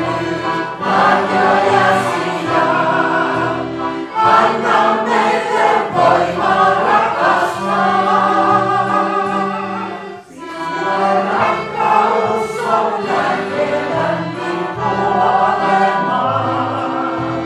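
A group of voices singing a Christian worship song in long, held phrases, with short breaks between phrases about four and ten seconds in.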